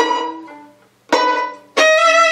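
Violin pizzicato chords: a loud plucked chord at the start rings and dies away, a second pluck follows a little over a second in, and near the end the bow comes onto the string in a sustained arco note, the quick switch from pizzicato to arco.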